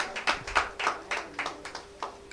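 A quick, irregular run of sharp taps or claps, about five a second, over a faint steady hum.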